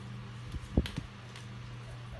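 Cardstock circles being laid by hand on a tile floor: a few soft taps and rustles, the loudest a little under a second in, over a steady low hum.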